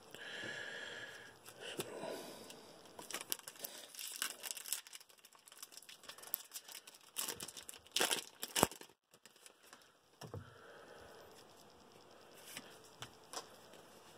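Crinkling and tearing of a plastic trading-card pack wrapper being ripped open by hand, with a run of sharper crackles a little past the middle as the cards are pulled out.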